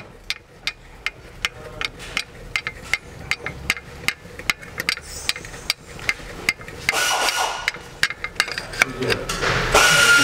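Rapid, irregular metallic clicks and taps of hand tools on a turbocharger's vacuum actuator rod as it is threaded on loosely by hand. From about seven seconds in, a steady high-pitched whine with a hiss joins.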